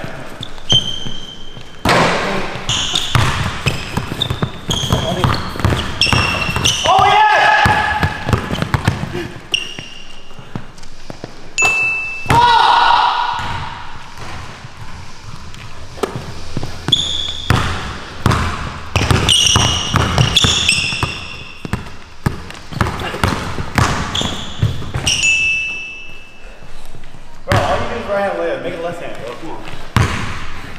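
A basketball dribbled on a hardwood court, bouncing over and over, with rubber-soled sneakers giving short high squeaks as the players cut and change direction. It echoes in a large indoor gym.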